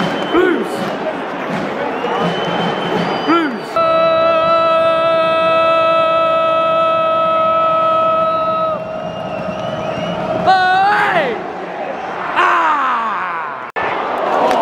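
Football stadium crowd noise. About four seconds in, a loud single held note starts close by and lasts about five seconds, then stops. Shouted voices follow, one rising in pitch and then others falling.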